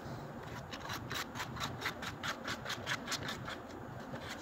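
A knife sawing back and forth through a fruit on a paper bag: a quick run of short scraping strokes, about four or five a second, with the paper rustling under it.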